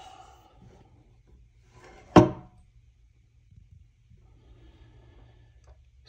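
A bat compression tester being worked on a softball bat: one sharp knock about two seconds in with a brief ring, then faint handling noise as the pressure is taken up.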